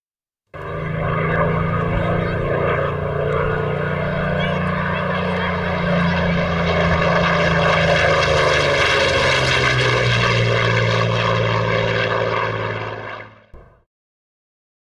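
Propeller-driven aircraft's piston engine running loud and steady, its note dropping lower about ten seconds in; the sound cuts off abruptly near the end.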